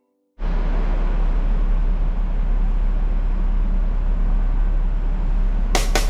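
Steady rumble and road noise of a double-decker bus on the move, cutting in abruptly about half a second in. Music comes back in near the end.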